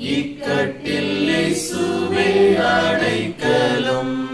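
A mixed choir of men's and women's voices singing a Tamil Christian chorus, with a brief break between phrases near the end.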